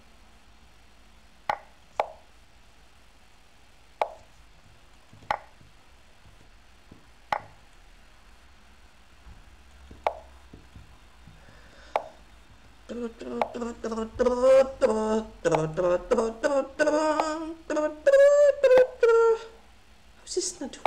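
Online chess move sound effects: about seven short plops at uneven gaps over the first twelve seconds, one for each move played on the board. Then, for about the last six seconds, a man hums a wordless tune.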